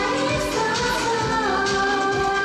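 Female voices singing a K-pop song over an upbeat pop dance backing track, played through the stage sound system.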